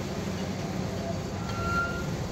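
Steady low background rumble, with a brief thin high squeak about one and a half seconds in.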